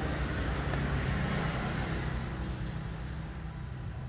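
A small motorcycle engine idling steadily, growing gradually fainter toward the end.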